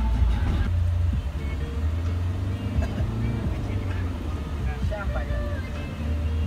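Low engine and road rumble inside a moving van's cabin, with voices and music over it.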